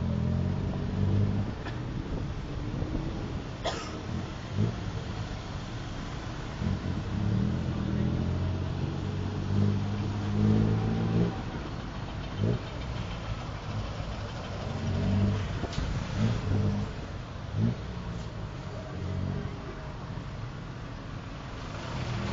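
A tuk-tuk's small engine running in the open cab, its note rising and falling as it speeds up and slows in traffic, over steady road and traffic noise. There are a few sharp knocks from the ride.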